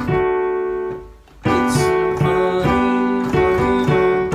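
Piano playing rock-and-roll chords, D major and G major, over a left-hand bass. A chord rings out, there is a short break about a second in, then chords are struck in a steady rhythm.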